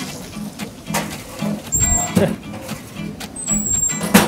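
Background music with a steady low pulse about twice a second. About two seconds in there is a short metallic clank and thud as a frying pan is put into a restaurant range oven.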